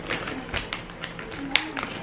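Soft background music over irregular light taps and clicks, the sharpest about one and a half seconds in.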